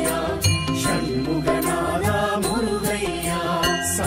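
Tamil devotional music: chanting voices over instruments and percussion, with short bell-like chimes ringing near the start and again near the end.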